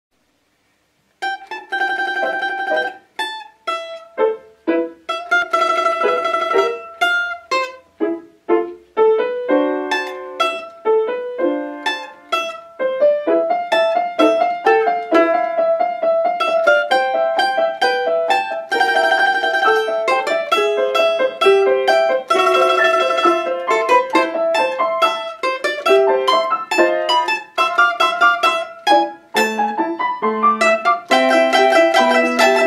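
Mandolin playing a lively melody with piano accompaniment, starting about a second in; in places the mandolin plays fast repeated notes.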